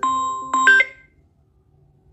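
Short electronic chime melody: a few bell-like notes struck in quick succession, the last ones about half a second in, ending suddenly about a second in and leaving a faint hush.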